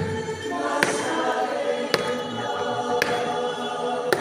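A group of voices singing together as a choir in long held notes, with a sharp knock about once a second, four in all.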